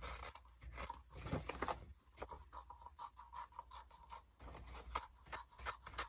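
Scissors cutting waterslide decal paper, faint irregular snips and paper rustles.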